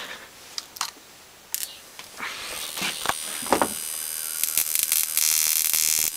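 A few clicks and knocks of clips and wires being handled, then a flyback transformer driven by a 555-timer ignition coil driver starts up with a high-pitched whine of several steady tones that grows louder, a harsh hiss joining near the end.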